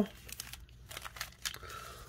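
Wrappers of a handful of Tim Hortons hockey card packs crinkling faintly in short scattered rustles as the packs are picked up and handled.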